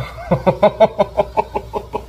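A man laughing in a quick run of about a dozen short "ha" sounds, tailing off near the end.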